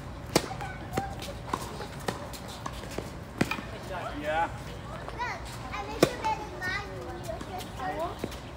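Tennis ball hit back and forth with rackets in a doubles rally, starting with a serve: sharp pops come at irregular intervals of about half a second to a second, the loudest a few seconds in and near the middle. Short calls from the players come in between.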